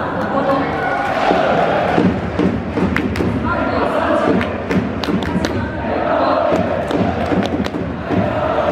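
Stadium crowd of football supporters during the player introductions, with a public-address voice and many voices calling out over a steady crowd din. A few sharp knocks cut through it, mostly in the second half.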